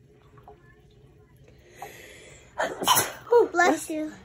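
A person sneezes about three seconds in: a breathy intake, then one sharp, loud sneeze, followed by a few quick words.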